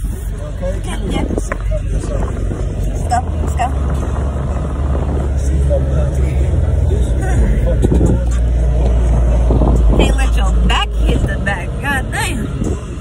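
Steady low rumble of a car heard from inside the cabin, growing louder towards the middle, with short bits of indistinct voice over it.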